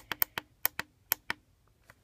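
A quick, irregular run of sharp plastic clicks, about eight in the first second and a half, then they stop: the buttons of a toy digital clock being pressed and handled.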